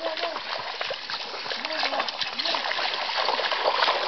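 Water splashing as a person wades through a shallow, rocky stream, legs churning the water with each step, over the steady rush of the stream.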